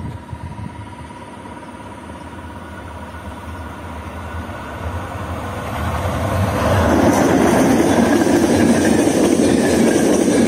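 Locomotive-hauled passenger train on an electrified line approaching and passing close, the sound swelling from a low rumble to loud about seven seconds in.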